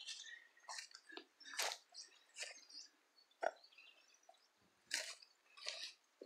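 Footsteps through tall grass and weeds, with stems brushing and crunching underfoot in irregular soft strokes about once a second.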